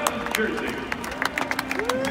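Hand claps close by, with a crowd applauding around them: a run of sharp, irregular claps.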